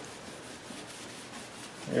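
Faint rubbing of a hand or eraser wiping a whiteboard clean.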